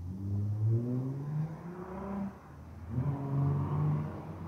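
A road vehicle's engine accelerating close by: its note climbs in pitch for about two seconds, drops at a gear change, then climbs again.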